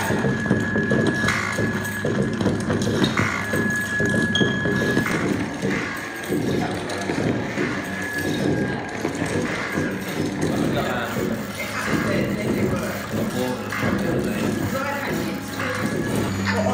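Homemade turntable-driven noise machines playing together: objects on spinning records tapping, knocking and scraping, picked up by contact mics and microphones, in a dense, continuous clatter. A thin high tone comes and goes over it.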